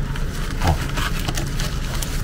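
A plastic mailing pouch being handled and pulled open by hand: irregular crinkling and rustling of the plastic.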